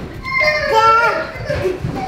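Children shrieking and shouting excitedly at high pitch while playing a chase game, with one long wavering shriek through the middle.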